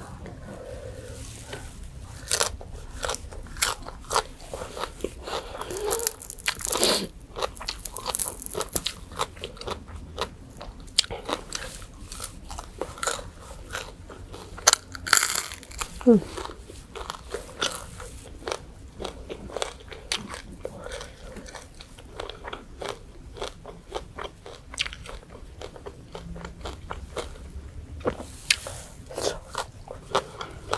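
Close-up eating sounds: irregular sharp crunches from biting into crispy fried food, mixed with wet chewing.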